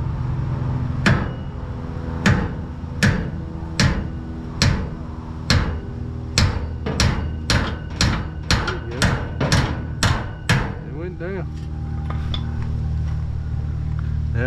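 Hammer blows beating the bent truck bed back down, about sixteen strikes that come faster toward the end, over a steady low hum.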